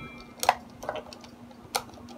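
A few sharp clicks and taps of a hand screwdriver tightening pickguard screws on a Squier Affinity Stratocaster, the loudest about half a second in and another near the end, over a faint steady hum.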